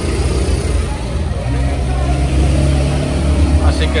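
A motor vehicle's engine running nearby: a deep, steady rumble that swells a little in the middle.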